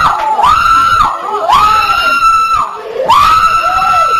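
A woman preacher screaming into a handheld microphone in about three long, high-pitched held cries, each lasting about a second, with short breaks between them.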